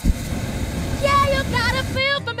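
Hot air balloon's propane burners firing: a loud, steady roar that starts suddenly, with a woman's singing faintly over it from about a second in.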